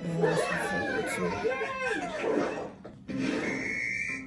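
A person's voice, speaking or singing indistinctly, with a short pause about three seconds in.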